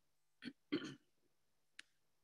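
A person faintly clearing their throat: two short rasps about half a second apart, followed by a faint click near the end.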